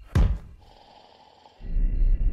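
A heavy thump of a body hitting a wall, about a quarter second in: a cartoon sound effect for a man, floated by a tractor beam, hitting the wall beside the window instead of passing through it. Near the end a loud, steady low rumble starts.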